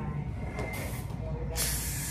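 A brief hiss of spraying air about half a second in, then a louder, sustained hiss of air spray starting about one and a half seconds in, over a low steady hum.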